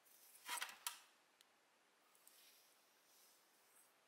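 Near silence, broken about half a second in by a brief handling rustle and a sharp click as steel tweezers are set down, then a faint tick.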